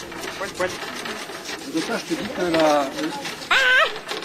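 Several people's voices overlapping in casual talk, with no clear words, and a short high-pitched exclamation near the end. Rubbing noise from the camera being handled runs under the voices.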